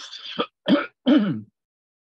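A man clearing his throat and coughing: about four short, rough voiced bursts in the first second and a half.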